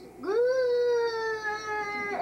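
A child's voice drawing out the word "good" in one long held note, its pitch falling slightly toward the end.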